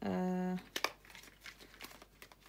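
Small cardboard perfume box and a paper card being handled: light crinkling of paper and card with a few sharp clicks and taps, clustered about a second in.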